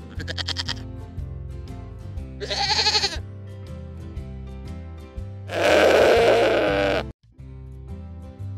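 Three bleats over background music: a short quavering one at the start, another about two and a half seconds in, and a long, loud one from about five and a half seconds in. The music drops out for a moment just after the last bleat.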